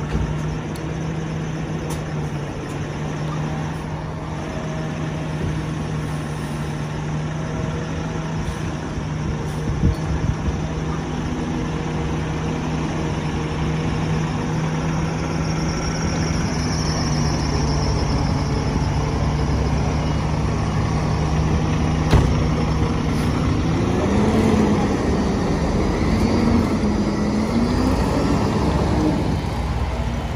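Fire rescue truck's engine idling with a steady low hum, then revving up and down as the truck pulls out and moves off, from about twenty-four seconds in. Two sharp knocks come through, about ten and twenty-two seconds in.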